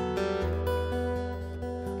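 Acoustic guitar playing a milonga accompaniment between sung lines, with chords ringing on and a new chord strummed about half a second in.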